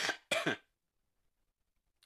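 A man clearing his throat once, briefly, at the start.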